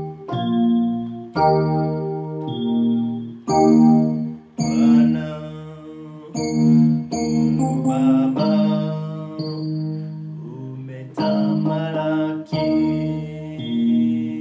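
Electronic keyboard playing held chords in a slow worship song, a new chord struck every one to two seconds. A man's voice sings along in places.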